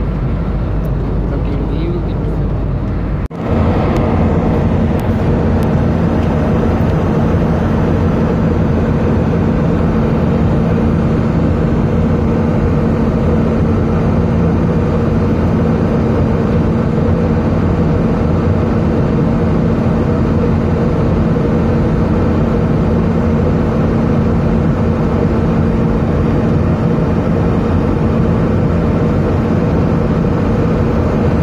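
Jet airliner cabin noise at cruise: a steady roar of engines and airflow with a constant hum. About three seconds in the sound changes abruptly and becomes louder and brighter.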